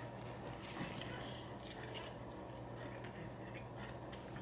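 Faint chewing of a mouthful of cheese pizza, with scattered soft mouth clicks, over a low steady hum.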